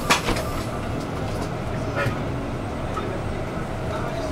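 City bus heard from inside, near the rear doors: a sharp hiss and thump right at the start as the doors close, then the engine's low rumble as the bus pulls away from the stop, with a smaller knock about two seconds in.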